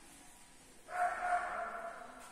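A dog giving a drawn-out, high-pitched bark about a second in, with two louder pulses and lasting about a second.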